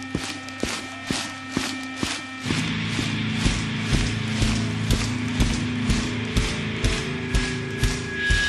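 Large concert crowd clapping in unison to a steady beat, about three claps a second. A sustained low droning musical tone sits underneath and gets fuller about two and a half seconds in.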